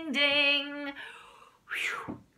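A woman singing unaccompanied, holding the last note of a children's song for about a second before it fades. A short breathy rush of air follows near the end.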